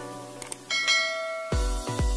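Intro music with a bright bell-like chime sound effect about two-thirds of a second in, ringing for under a second as the subscribe bell icon is clicked. Near the end an electronic dance beat with heavy bass kicks comes in.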